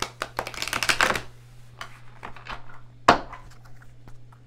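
A deck of tarot cards being shuffled by hand. A quick run of card flicks comes about a second in, then scattered snaps, then one sharp knock just after three seconds, the loudest sound. A steady low hum runs underneath.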